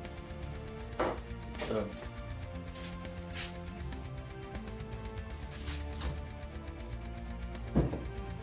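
Background music with steady held notes, under a few short knocks and clicks from tools and parts being handled on a workbench. The sharpest knock comes near the end.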